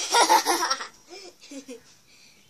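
A young girl laughing loudly, tailing off into a few short, softer laughs about a second in.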